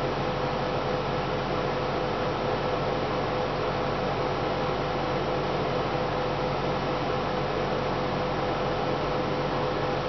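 Steady, even hiss with a low hum and a faint steady tone underneath, unchanging throughout.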